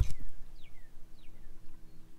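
A bird giving three or four short whistled calls that fall in pitch, over a steady low rumble.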